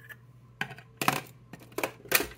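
Small plastic makeup containers set down in a clear acrylic organizer drawer: three or four sharp clicks and clacks of plastic on acrylic, spread over a little more than a second.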